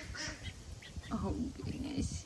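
Ducks calling softly: a few short high peeps, then a lower, wavering call about a second in.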